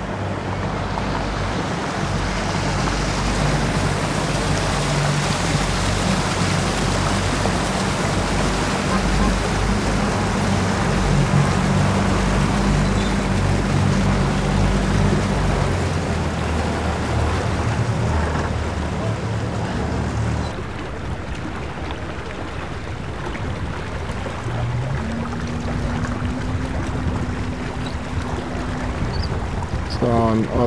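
Triple Yamaha outboard motors on a center-console police boat running as it passes close by: a steady low engine hum, shifting pitch a little, over water and wind noise. The hum drops away about two-thirds of the way through, and a second boat's outboards hum in near the end.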